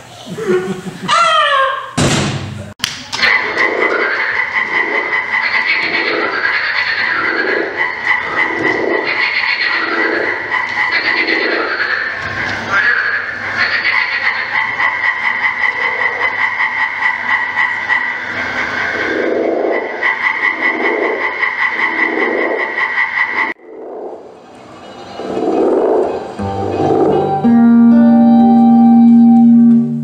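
A frog-like croaking chorus: low croaks repeating a little more than once a second over a steady high trill, cutting off abruptly about three-quarters of the way through. A rising swell and then a loud, sustained low note follow near the end.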